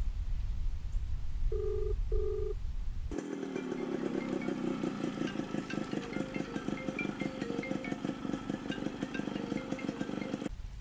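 Low car-cabin rumble with two short, matching beeps about two seconds in, the double-ring tone of a phone call ringing out. From about three seconds in, a motorcycle engine idles with an even pulse, with short high chirps over it.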